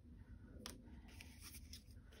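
Faint rustling and sliding of cardstock ephemera pieces being shuffled by hand, with one light click a little under a second in.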